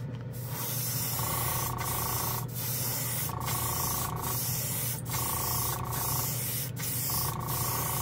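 Gravity-feed airbrush spraying thinned metallic paint at low pressure. It gives a steady hiss that breaks off briefly about every second as the trigger is worked, over a steady low hum.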